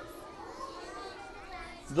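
Faint background chatter of a group of young children, several small voices overlapping at low level.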